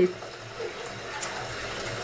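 Kitchen tap running steadily into a sink while dishes are washed by hand.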